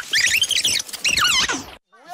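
A high-pitched squealing voice: a quick run of warbling squeals that swoop up and down in pitch, dying away near the end.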